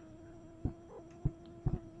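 Faint steady low hum, with a few short soft thumps scattered through it.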